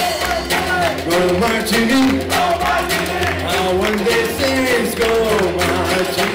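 Dixieland swing band playing: a melody line over walking upright bass and a steady beat.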